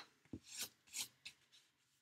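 A few short, faint scratchy rubs of paper being handled and pressed down onto a cardstock card front.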